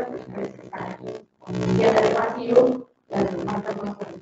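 A woman's voice talking into a handheld microphone, hard to make out, cutting out to silence twice, about one and three seconds in.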